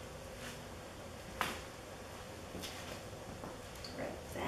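Faint scraping of a spatula against a stainless steel mixing bowl as cake batter is poured out, with one sharp click about a second and a half in, over a faint steady hum.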